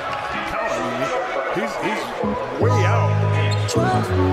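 Arena game audio: a basketball bouncing on a hardwood court, with a commentator's voice and crowd behind it. A low, steady music bass comes back in about two-thirds of the way through.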